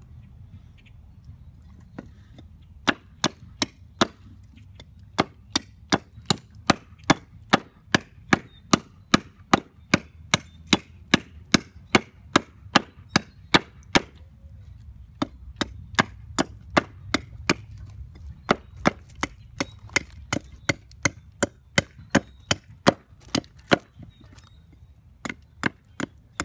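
A hatchet takes quick, light chopping strokes into a wooden spoon blank held against a board, shaping it: a steady run of sharp wooden knocks, about three a second. They start a few seconds in and pause briefly about halfway through.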